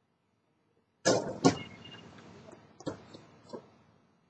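A basketball striking the hoop: two loud knocks half a second apart about a second in, with a rattle dying away after them, then two fainter knocks near the end.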